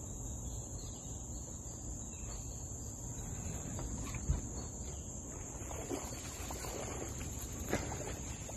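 A hooked bass splashing and thrashing at the water's surface in irregular bursts through the second half, with a sharper splash near the end. A steady high buzz of crickets runs underneath, and a single low thump comes about four seconds in.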